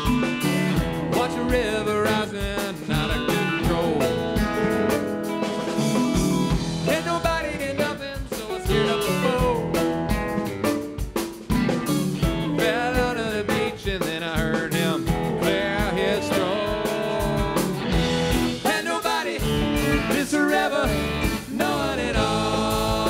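A rock band playing live: electric bass, electric guitars and drum kit, with a bending melodic lead line over a steady beat.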